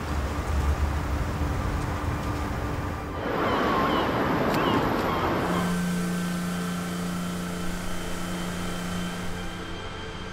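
Low rumble, then a loud rushing hiss lasting about two seconds from a backpack disinfectant fogger spraying. After it, background music holds sustained chords.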